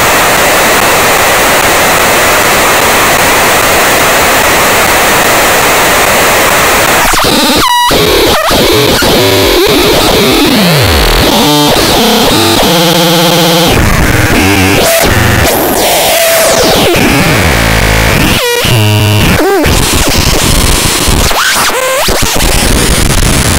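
Loud synthesized noise from a software modular patch of an Instruo Cš-L dual oscillator and a Plaits macro oscillator. It is a dense wash of noise at first; about seven seconds in it breaks into swooping pitch glides and stuttering, stepped tones as the oscillator's coarse pitch is turned.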